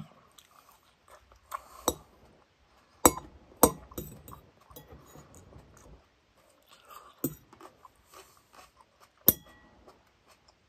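Close-up chewing of a mouthful of salad, lettuce and olive, with crunching in uneven spells and five sharp clicks spread through.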